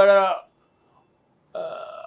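A man's voice ends a phrase, a second of silence follows, then a short, quieter breathy sound near the end: an audible breath drawn before he speaks again.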